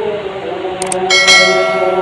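YouTube subscribe-button sound effect: a short click a little under a second in, then a bright notification-bell ding about a second in that rings on and fades.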